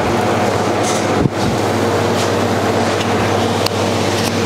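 Steady electric hum of running refrigeration machinery, a deep even drone with a rushing noise over it, and a couple of faint clicks.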